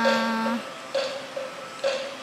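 A voice holds the last syllable of a spoken sentence for about half a second. After it come a few faint short sounds over a faint steady hum.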